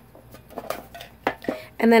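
A small metal tin being moved on a cluttered desk, giving a few light clinks and knocks.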